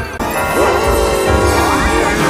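Distorted, effects-processed children's channel intro music, with a sudden crash-like onset just after the start, a heavy low rumble, and its pitch sliding down and then back up near the end.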